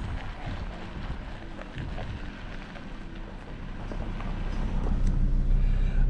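Car engine and tyre noise heard from inside the cabin as the car rolls slowly over a dirt car park, with a low rumble that grows louder over the last couple of seconds.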